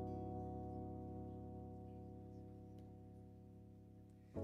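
Music: a sustained chord ringing out and fading slowly, with no new notes struck.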